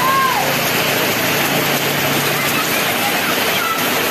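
Heavy rain falling steadily, a loud even hiss with no breaks. A short high voice cry sounds right at the start.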